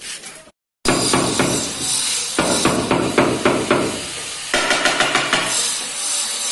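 A hammer tapping a marble slab laid on a sand bed to settle it down level: a rapid run of knocks that starts abruptly about a second in, keeps going at an uneven pace and eases off slightly near the end.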